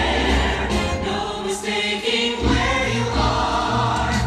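A live orchestra playing with a choir of singing voices, as part of a Christmas stage show. Deep bass notes come in strongly a little after halfway.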